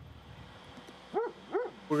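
A dog barking twice, two short yips about half a second apart.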